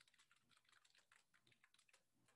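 Faint computer keyboard typing: a quick, uneven run of keystrokes.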